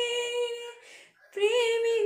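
A woman singing a Telugu song unaccompanied: a held note breaks off just under a second in, there is a short breath, and she comes back in on a new phrase about half a second later.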